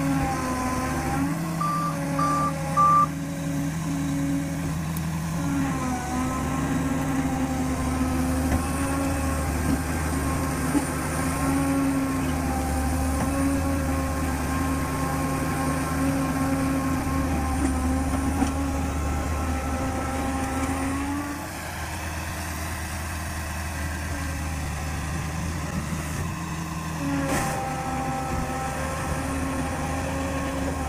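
Diesel engine of a Liebherr 734 crawler dozer running under load while it struggles through deep bog mud, its note dipping about two-thirds of the way through and picking up again near the end. Three short high beeps from a reversing alarm sound about two seconds in.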